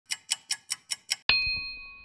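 Intro sound logo: six quick clock-tick clicks, about five a second, then a single bright bell-like ding that rings on and fades away.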